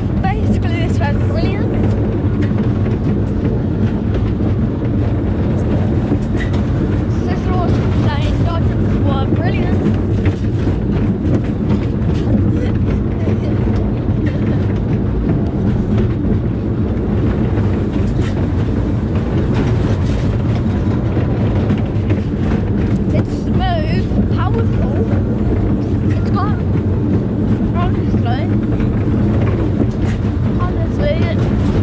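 Fun-fair ambience: a steady, loud low machine hum with voices calling and shouting over it at intervals.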